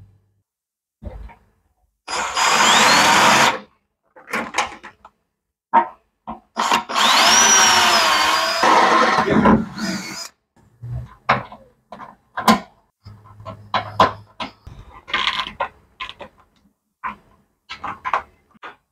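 Cordless drill run in two bursts, about one and a half and three seconds long, drilling into the sheet-metal inner guard for extra hose-clamp holes. In the longer burst the motor's whine rises, then falls. Light clicks and knocks follow.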